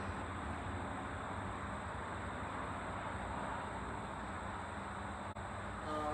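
Steady, even rush of distant highway traffic.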